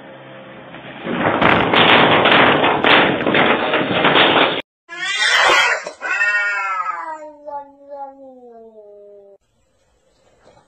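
A loud clattering noise for about three seconds, then a cut to two domestic cats in a standoff: a sharp yowl, then a long drawn-out caterwaul that falls slowly in pitch.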